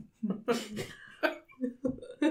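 A person coughing in short bursts, mixed with brief fragments of voice.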